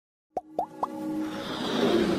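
Intro jingle sound effects: three quick plops about a quarter second apart, each a little higher in pitch than the last, then a rising swell as the music builds.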